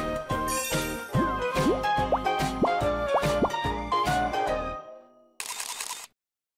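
Upbeat TV theme music with a steady beat and a run of quick upward-sliding notes, fading out about five seconds in. A short burst of hiss follows near the end.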